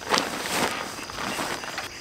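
Fabric rustling and crinkling as an Arc'teryx Atom LT synthetic insulated jacket is stuffed down into a Dyneema backpack, with crickets chirping steadily behind it.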